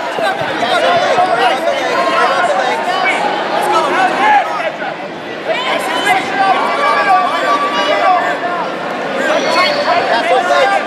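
Crowd of spectators and coaches talking and calling out over one another, a steady babble of many voices.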